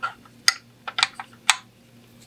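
A series of short, sharp clicks, about six in two seconds and unevenly spaced, as a toy tire and wheel are pushed and snapped onto the axle of a Nylint pressed-steel toy truck.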